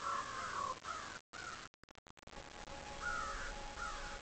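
A bird calling repeatedly over a steady hiss, the calls coming in short bouts. The sound cuts out in brief gaps about a second in, and a faint steady hum is present from about two seconds on.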